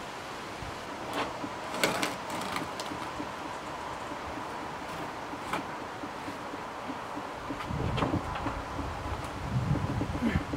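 Wooden roof truss being shifted by hand across the timber frame's top beams: a few sharp wood-on-wood knocks and scrapes, with a low rumble of wind on the microphone in the last couple of seconds.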